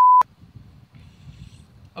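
A loud, steady 1 kHz colour-bars test-tone beep that cuts off abruptly with a click just after the start. It is followed by a low background rumble.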